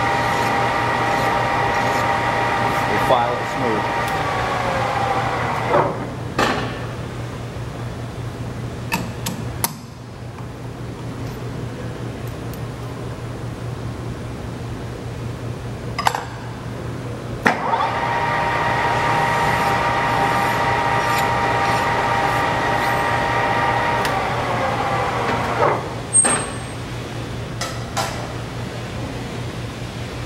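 JET metal lathe's spindle and headstock gearing running with a steady whine, then winding down, falling in pitch as it coasts to a stop a few seconds in. Scattered clicks and knocks follow; the spindle starts again a little past halfway, runs, and winds down once more near the end, over a steady low hum.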